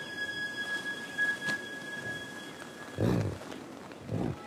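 Quiet held tones of soundtrack music, then about three seconds in a short, low grunt from a yak.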